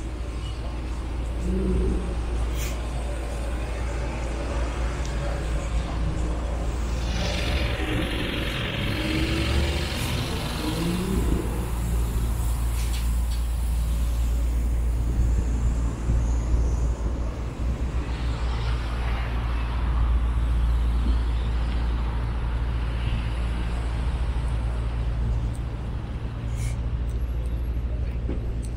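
City street ambience: road traffic running past with a steady low rumble, a louder hiss about eight seconds in, and scattered voices.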